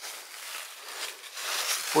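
Soft, steady rustling of dry fallen leaves, growing a little louder toward the end.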